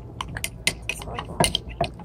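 Metal spoons clinking and scraping against the insides of cups while stirring a thick flour-and-water paste, in quick, irregular taps.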